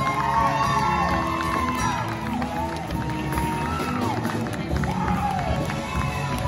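Audience cheering and whooping, with many high shouts rising and falling in pitch, over a band playing.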